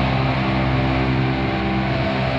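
Doom metal recording: electric guitars holding long, sustained chords, the chord changing near the start and again at the end.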